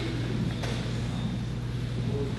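Steady low hum under faint room noise, with a faint knock about half a second in.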